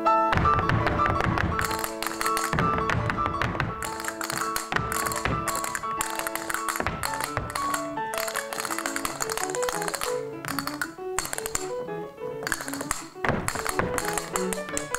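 A grand piano plays a lively Spanish dance, with the dancers' shoes tapping and stamping on the stage floor in quick, sharp strikes that sound over the piano.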